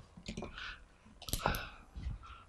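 A few short clicks and scuffs from a person stepping up to a whiteboard, picked up close by a headset microphone; the loudest come about one and a half seconds in.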